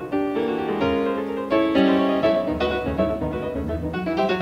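Piano playing a passage of struck chords in a jazz-tinged piano concerto. New chords start about every half second and ring out between them.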